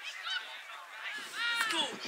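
High-pitched shouting from players or spectators at a youth soccer match, with a short call near the start and a louder, drawn-out shout about one and a half seconds in.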